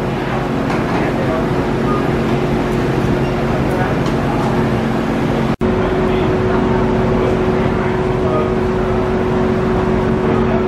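A steady machine hum under indistinct voices, the background of a busy roller-coaster station, breaking off for an instant about halfway through before the hum carries on.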